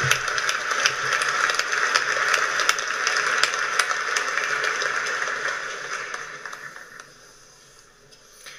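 Large audience applauding in an auditorium, a dense patter of clapping that dies away gradually over the last few seconds.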